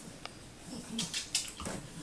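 A West Highland white terrier's wet mouth and nose sounds, a few short clicks and snuffles, as it noses and licks at a bone-shaped dog biscuit.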